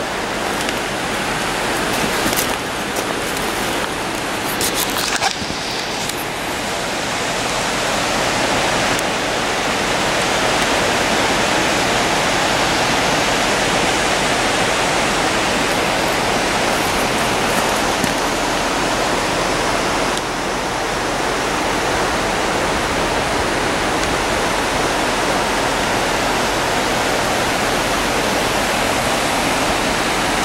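Steady rush of flowing water, a stream or river running beneath a railroad bridge, an even hiss that grows a little louder after several seconds.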